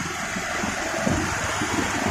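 Steady rush of wind and road noise on a motorcycle-mounted microphone as a Bajaj Pulsar 220F moves slowly through traffic.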